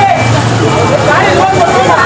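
A truck-mounted crane's engine running steadily, with men's voices talking and calling out over it.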